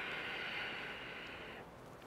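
A long, steady exhaled breath, a soft hiss that fades slowly and stops about three-quarters of the way through.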